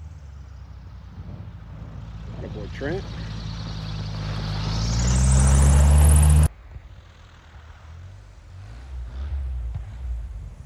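Light bush plane's piston engine and propeller, growing louder as the plane taxis in close, with the propeller's whine climbing near its loudest. It cuts off sharply about six and a half seconds in, and a fainter plane engine hum carries on after.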